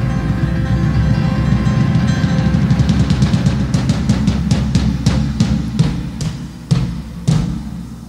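A keyboard, bass and drums rock trio playing live: a loud held chord under a rapid, quickening drum roll, then two separate heavy hits near the end as the chord dies away.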